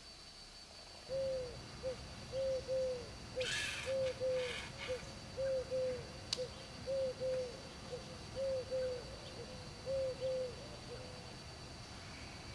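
Eurasian collared dove cooing its three-note phrase, two coos and a shorter third, repeated about every one and a half seconds. A brief burst of noise comes about three and a half seconds in.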